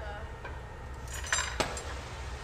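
Steel glassblowing tools clinking at the bench: jacks and the blowpipe on its steel rails give a short metallic ring and then a click a little past the middle.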